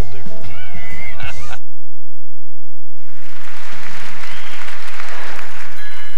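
The end of a TV commercial, music and a man's voice, stops abruptly. About three seconds in, an audience's applause and cheering rises, swells and then fades away.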